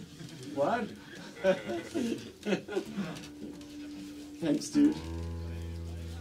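Voices talking in a small room, then, about five seconds in, a chord is strummed on a steel-string acoustic guitar and left ringing.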